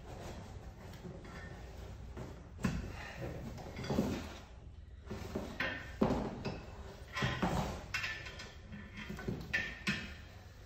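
Irregular knocks, scrapes and rustling as gear and objects are handled and shifted about at close range, a few sharper knocks standing out.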